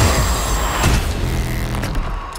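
Sudden loud cinematic impact hit in trailer sound design: a dense noisy blast with a falling low boom, a second hit just under a second in, then a low rumbling drone.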